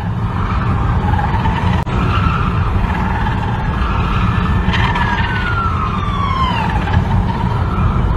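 Steady road and engine rumble heard inside a moving car's cabin. About five seconds in, a thin high tone slides down in pitch for about two seconds.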